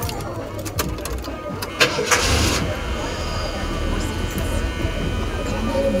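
Ford 400 big-block V8 with a two-barrel carburetor and an aftermarket cam being started: a few clicks, then it catches with a loud burst about two seconds in and settles into a steady idle.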